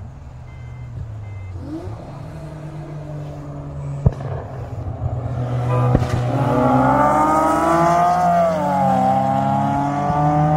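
Car engine at full throttle, getting louder and climbing in pitch from about six seconds in, dropping at a gear change near nine seconds and climbing again. Two sharp knocks at about four and six seconds.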